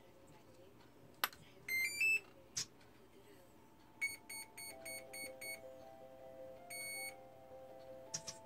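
An electric RC helicopter's electronics powering up as the flight battery is connected: a click from the connector, a rising three-note startup tune, a second click, then six short beeps and one longer beep.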